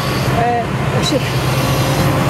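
Caterpillar 330F hydraulic excavator's diesel engine running with a steady low drone as the grapple arm moves, with a person talking over it.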